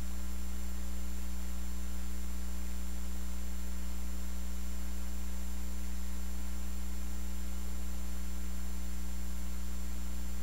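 Steady low electrical hum, unchanging throughout, with no other sound over it.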